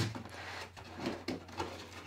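Moulded paper-pulp box handled and opened: a handful of faint knocks and rubbing as it is turned over in the hands and its lid starts to come off.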